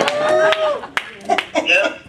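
People's voices: one drawn-out exclamation, then short voice sounds, with three sharp clicks spread about half a second apart.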